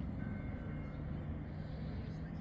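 A steady low outdoor rumble with a faint steady hum coming in about a third of the way through.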